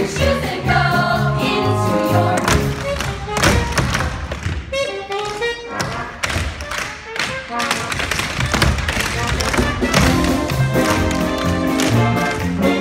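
Tap shoes striking a stage floor in quick, dense taps over show-tune accompaniment. For a stretch in the middle the music thins and the taps carry.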